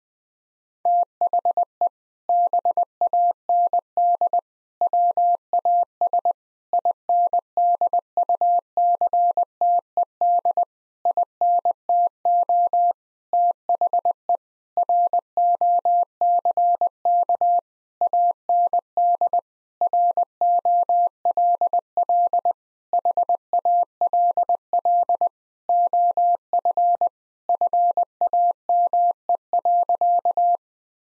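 Morse code sent at 20 words per minute as a single steady tone keyed into short and long beeps, grouped into letters and words with short gaps between. It spells out the sentence 'The band was inducted into the Rock and Roll Hall of Fame.'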